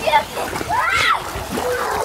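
Water splashing in a swimming pool, with a child's voice calling out about halfway through.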